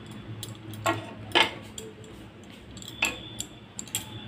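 Three sharp clinks of a metal kitchen utensil against cookware, spread over a few seconds, above a faint steady hum.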